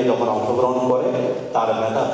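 A man's voice at a microphone in a drawn-out, intoned delivery, with a short break about one and a half seconds in.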